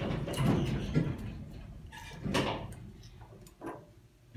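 OTIS hydraulic elevator doors sliding: a low rumble with a few sharp knocks, fading out over about three and a half seconds.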